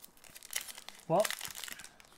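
Crinkling of a 2010-11 Upper Deck Victory hockey card pack wrapper as it is worked and torn open by hand.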